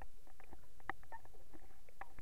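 Underwater sound picked up by a camera held below the surface while snorkelling: a steady low rumble of moving water with many short, irregular clicks and crackles.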